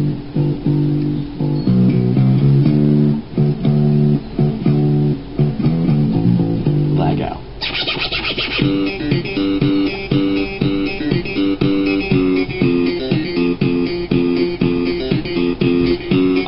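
Instrumental backing track for a rap song playing its intro, with sustained low chords. About seven and a half seconds in the arrangement changes, and a brighter part with a quick repeating pattern joins.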